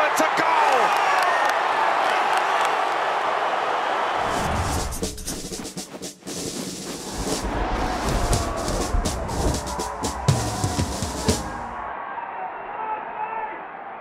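Football stadium crowd roaring after a goal, then from about four seconds in a short outro music track with heavy bass and drum hits, which stops near twelve seconds.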